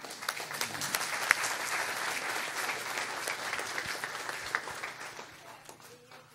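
A roomful of people applauding, starting at once and fading away over about five seconds.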